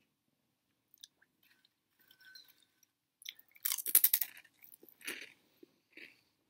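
Close-up chewing of crunchy veggie straws: scattered small crackles, then a loud run of crunching about four seconds in and a shorter burst a second later.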